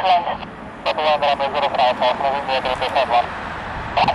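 A man's voice over an air traffic control radio, thin and narrow in sound, with a short gap in the talk about half a second in.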